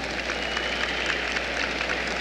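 Scattered applause and crowd noise echoing in an ice arena, with many irregular claps. A thin high tone sounds briefly about a third of a second in.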